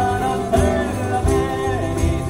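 Live Sicilian folk song: a man's voice sings a gliding melody over the beat and jingles of a tamburello frame drum, with electric bass underneath.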